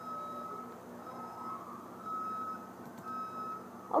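Faint reversing alarm beeping about once a second, a single steady tone, each beep about half a second long.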